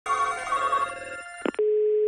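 Telephone ringing for about a second, then two quick clicks and a steady single-pitch dial tone.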